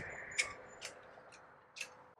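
A few faint, sharp ticks, roughly one every half second, over low background noise.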